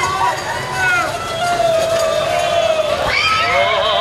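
Several people's voices calling out in a busy street, with one long, drawn-out shout or sung note that slides slowly down in pitch through the middle.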